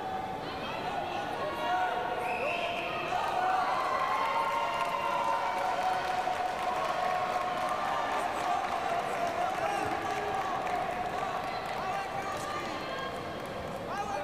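Sports-hall hubbub of several overlapping voices calling out from around the mat, with scattered dull thuds of impacts among them.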